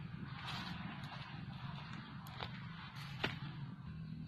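Rustling with two sharp clicks from handling a coil of nylon snare line, over a low steady hum.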